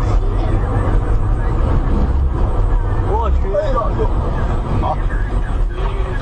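Steady low road and engine rumble inside a moving car's cabin, picked up by a dashcam, with people in the car talking briefly about halfway through.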